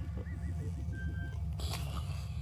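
Electronic spaceship-console ambience: a steady low hum with a fast pulsing throb, about seven pulses a second, and small repeated bleeps and thin steady tones over it. A brief noisy rush sounds near the end.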